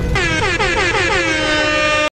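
DJ-style air-horn sound effect: a rapid string of short blasts, each dropping in pitch, running into one long held blast.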